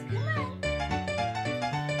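A Ragdoll kitten meowing once near the start, a short call rising and then falling in pitch, over steady background music.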